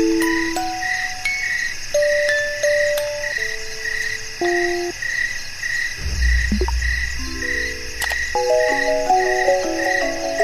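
Music box playing a slow, sparse melody over a steady background of crickets chirping about twice a second. About six seconds in, a low rumble runs for roughly two seconds, and the music box notes come thicker near the end.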